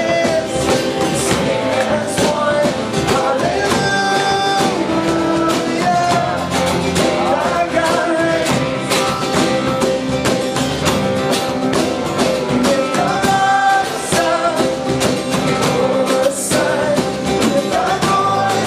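Live worship band playing a rock-style song: a male lead vocalist singing over acoustic and electric guitars, cajón and drum kit.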